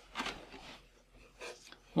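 Faint rubbing and scraping of a 3-pin DMX cable being handled and moved, in two short spells.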